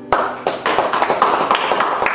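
Audience applauding with a dense run of hand claps that starts abruptly about a tenth of a second in, just as the last acoustic guitar chord dies away.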